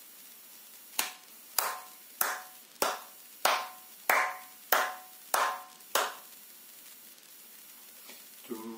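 Nine hand claps on a steady beat, about one every 0.6 seconds, clapping out quarter notes of a rhythm exercise. The claps start about a second in and stop about two seconds before the end.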